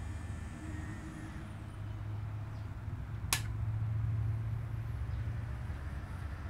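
3D printer's cooling fans running with a steady low hum, with one sharp click a little over three seconds in.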